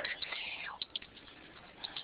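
A pause in speech: faint room noise with a soft breathy voice sound in the first half and a couple of small clicks just before a second in.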